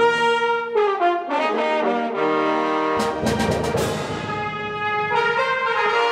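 Orchestral music led by the brass section, playing held chords that change every second or so, with a percussion accent about halfway through.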